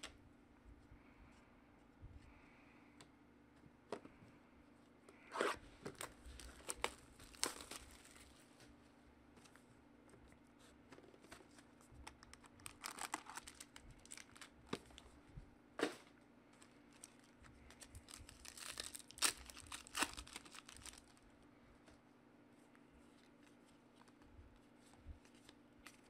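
Trading-card pack wrappers and box packaging being torn open and crinkled by hand in three bursts, with a few sharp clicks in between.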